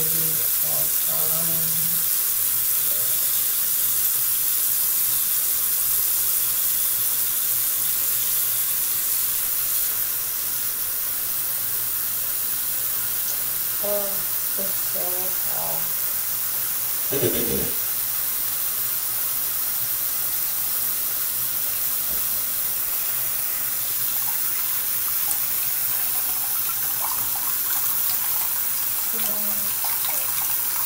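Bathroom sink tap running steadily, with a single short knock a little past halfway.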